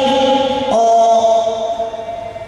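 A man's voice holding long drawn-out notes into a microphone through a PA, in a chant-like way, changing note about two-thirds of a second in and trailing off near the end.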